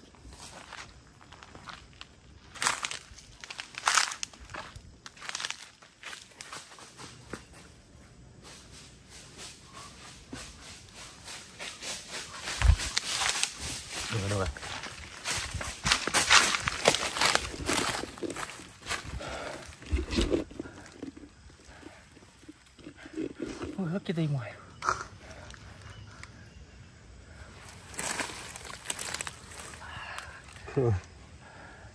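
Crunching and rustling of dry fallen leaves and brush underfoot and under hand, in bursts that come thickest midway through. A person's voice breaks in briefly a few times.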